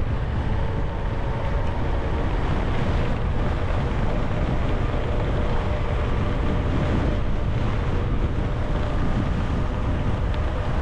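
Steady rush of wind on the microphone of a moving mountain bike, with its tyres rolling on pavement underneath.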